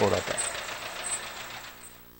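Street traffic noise from a minibus driving past, fading away steadily over about two seconds.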